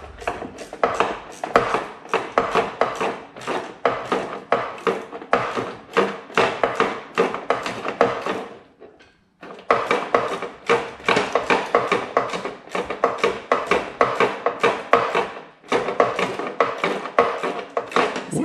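A ratchet with an 11/32-inch socket clicking in quick, even strokes, about four a second, as a nut is run down on the back of a metal replacement grille, the tool knocking against the grille. It stops briefly about nine seconds in and again near fifteen seconds.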